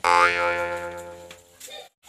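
Cartoon "boing" comedy sound effect: a sudden pitched ring with a brief wobble near the start, fading away over about a second and a half.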